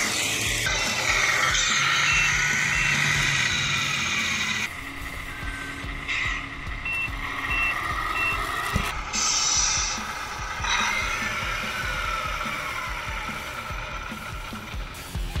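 The simulated reversing beeper of a Tamiya MFC-01 sound unit in a 1/14-scale RC semi truck, beeping in short runs of two or three evenly spaced beeps, over background music.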